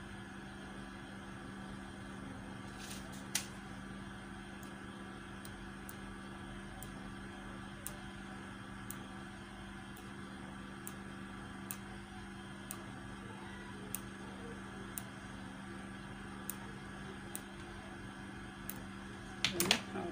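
A steady mechanical hum with a low buzzy pitch runs throughout. Faint, light ticks come roughly once a second over it.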